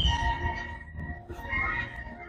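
Outdoor ambience with wind rumbling on the microphone, strongest in the first second and fading, over faint steady background music.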